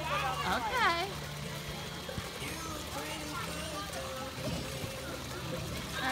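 Background chatter of people at a swimming pool, with a child's high voice near the start, over a low steady hum.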